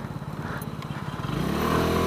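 125cc scooter engine running at low speed with an even pulse, then revving up about a second and a half in as the throttle opens, rising in pitch and getting louder.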